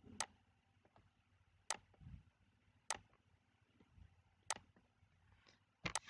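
Computer mouse clicking: about five sharp single clicks a second or so apart, with a faint low thump or two between them.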